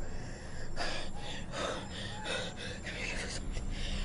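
A person drawing short, heavy gasping breaths, about two a second.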